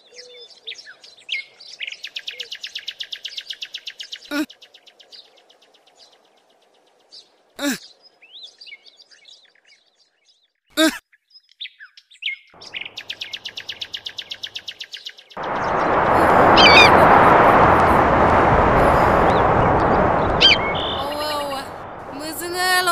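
Birds calling, with fast rattling trills and a few sharp calls that sweep downward in pitch. About fifteen seconds in, a loud steady rushing noise starts suddenly and covers the rest, with a bird call over it.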